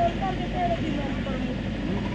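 Faint, broken voices over a steady low background rumble.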